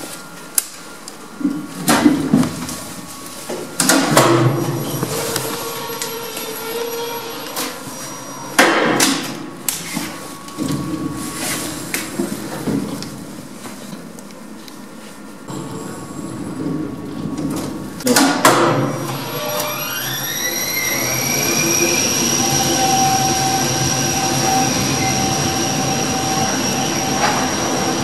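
A KONE EcoDisc gearless lift machine and its car: several sharp clunks and clicks from the lift equipment, then about two-thirds of the way in a whine rises in pitch and levels off as the car speeds up. A steady high whine and a rushing noise follow as the car travels fast through the shaft.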